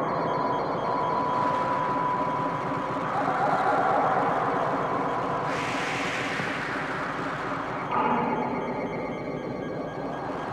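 Live electronic music from 1970s analogue synthesizers: a dense, noisy drone with a steady high tone held in the first few seconds. A hissing noise swell cuts in about five and a half seconds in and fades away by about eight seconds.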